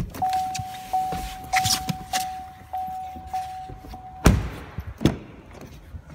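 A Chevrolet Volt's warning chime, one pitch dinging about every 0.6 s, which stops as a car door slams shut about four seconds in; another knock follows about a second later.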